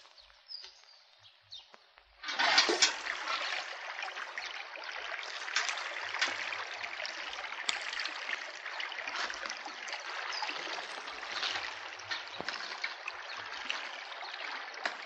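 Quiet at first; then, about two seconds in, water in a shallow stream starts suddenly and runs on steadily, with occasional sharper splashes.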